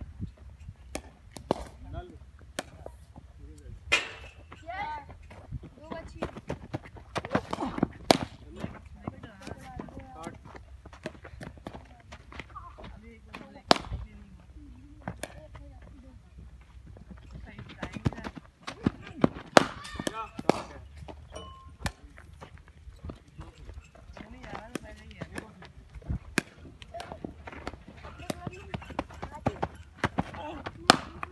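Cricket net practice: sharp, irregular knocks of the ball being bowled and struck by the bat, over scattered background voices and a low steady rumble.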